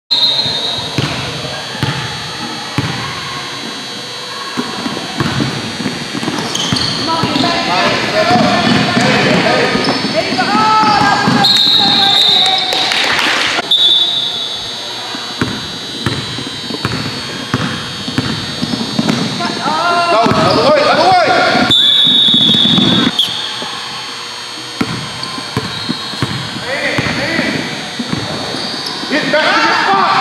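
A youth basketball game in a gym: the ball bouncing on the hardwood floor, with shouting voices from players and spectators.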